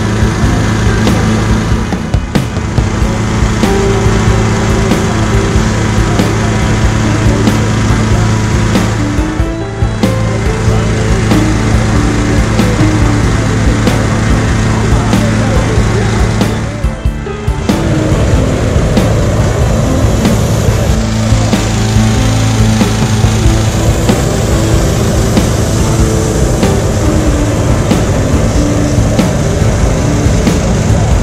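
Petrol-engined balloon inflator fan running steadily at high speed, blowing cold air into a hot-air balloon envelope during cold inflation, with background music playing alongside.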